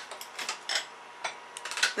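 A few scattered light clicks and knocks of a clear plastic stacking container with a lid being picked up and handled.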